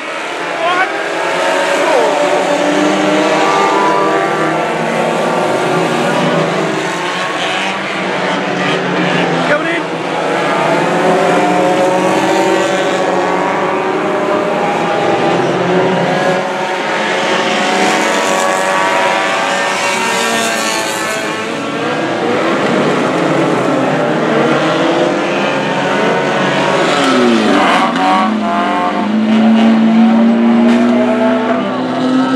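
Several banger racing cars' engines revving hard in a race, their pitches rising and falling as the cars accelerate, lift and pass. Near the end one engine revs loudly and close.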